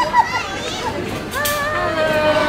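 Excited voices of a group calling out in greeting, short bright calls early on, then long drawn-out high calls from about halfway through.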